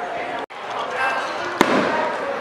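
Crowd voices, a brief dropout, then a single sharp firework bang about one and a half seconds in, over continuing voices.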